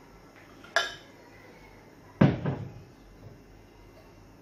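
Glassware clinking: a sharp, ringing clink about a second in as the glass milk jug touches the drinking glass, then a louder, duller knock a little after two seconds as the glass jug is set down on the table.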